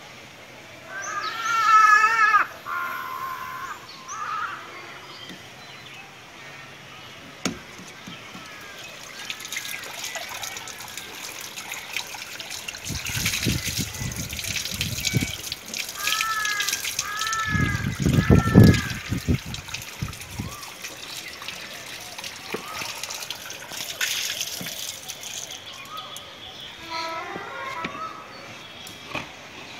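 Water running from a PVC tap and splashing onto concrete as filter parts are rinsed under it, with louder splashy gushes in the middle. A short call is heard near the start and three short repeated calls partway through.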